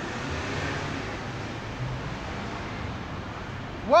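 Steady outdoor street noise: a hum of road traffic with a slight swell about half a second in.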